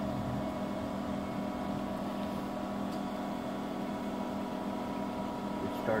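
Pool pump motor running with the spa circulation on: a steady electric hum with several held tones, unchanging throughout.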